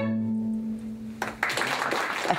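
String quartet playing classical music: long-held notes in a chord over a sustained low string note. About a second and a half in, the held notes break off and a brighter, noisier sound follows.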